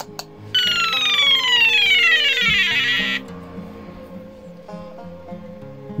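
Buzzer in an Arduino Cyclone LED-ring game playing a falling electronic tone, a pitch glide that sinks steadily for about two and a half seconds, as the game starts. Background guitar music plays underneath.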